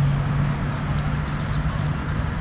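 Street traffic going by, a steady engine hum under a wash of road noise, with one short sharp click about halfway through.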